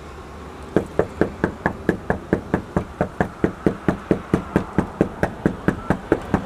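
A fist knocking on a front door over and over in a fast, even rhythm, about four or five knocks a second, starting about a second in and keeping on without a break.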